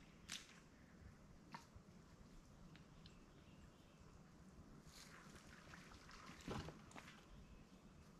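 Near silence with a few faint, brief knocks and rustles, the clearest about six and a half seconds in.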